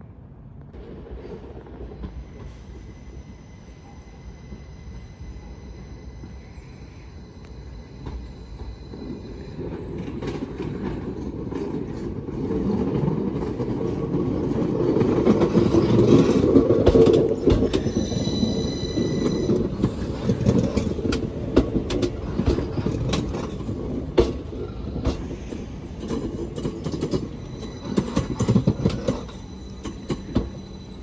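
Class 333 electric multiple unit running alongside the platform, its rumble building as the cab draws level. A brief high-pitched squeal comes just past midway, and sharp wheel clicks follow as the coaches roll by.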